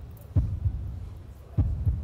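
A deep heartbeat-style double thump, repeating about every second and a quarter over a low hum: a suspense sound effect played while a contest result is awaited.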